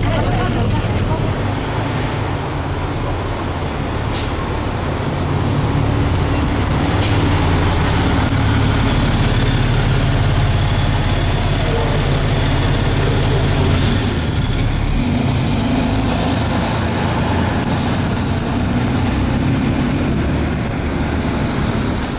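Inside a Nissan Diesel KC-RM route bus, its 6.9-litre FE6E six-cylinder diesel running slowly and idling with a steady low drone. A short hiss of air comes near the end.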